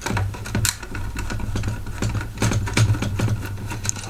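Small screwdriver backing a screw out of a plastic toy casing: a run of light, irregular clicks and scrapes of metal on plastic.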